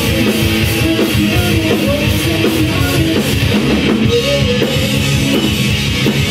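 Live rock band playing a loud song on electric guitars and drum kit.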